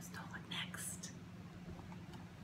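A woman whispering faintly, a few soft breathy syllables in the first second.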